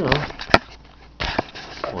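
Handling noise on a desk: one sharp click about half a second in, then a short scraping rustle about a second later, as a small sensor, meter probes and the camera are picked up and moved.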